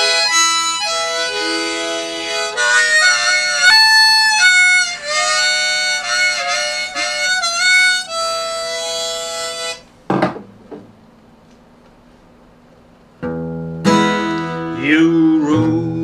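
A harmonica plays a melody of held notes for about ten seconds, then stops. After a pause of about three seconds, strumming on a mahogany Harley Benton acoustic guitar begins, and a man starts singing over it.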